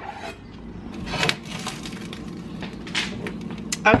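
A few scattered knocks and clinks of kitchen items being handled, over a steady low hum.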